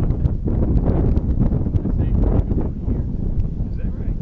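Wind buffeting the microphone: an uneven low rumble with scattered light clicks.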